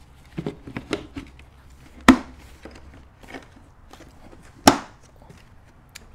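Plastic bucket lid with a cyclone separator being pressed down onto the rim of two nested plastic buckets: a few light knocks, then two sharp knocks about two and a half seconds apart as the lid seats.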